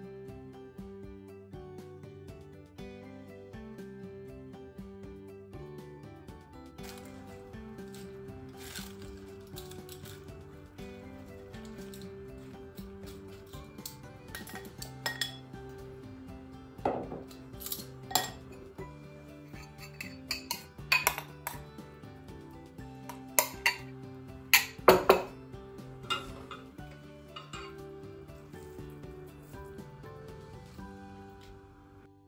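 Background music plays throughout. Over the second half comes a run of sharp clinks and knocks from glass bowls and metal kitchen tongs being handled and set down on a wooden board; the loudest are about three-quarters of the way through.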